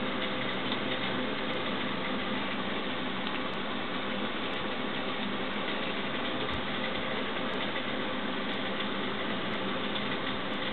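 A steady mechanical hum and hiss that does not change, with a few faint steady tones in it.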